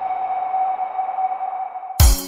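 A song's intro: one steady, held electronic tone over a soft hiss. The full band with drums comes in suddenly at the very end.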